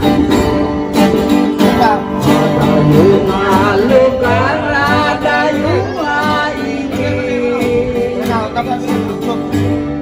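Acoustic guitars strummed together as a small string band plays an Ilokano folk song, with a man singing the melody into a microphone from about two seconds in.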